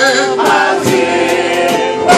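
Gospel singing: a man's lead voice through a microphone and PA, with other voices singing in harmony.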